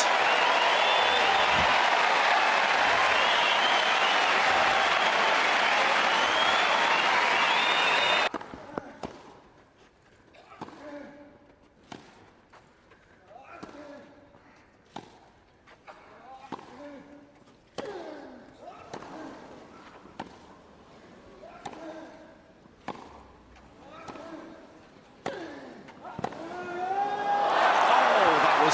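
A crowd cheering loudly, cut off abruptly about eight seconds in. Then a long tennis rally follows: racket strikes on the ball about once a second, many with a player's grunt, and crowd noise swells near the end as the point finishes.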